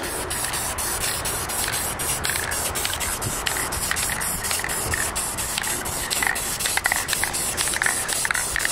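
Aerosol spray-paint can spraying a steady hiss as paint is passed along a rifle.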